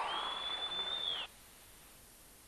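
A single high, steady whistling tone over a noisy crowd-like haze, dipping in pitch at its end and cutting off suddenly a little over a second in, leaving near silence.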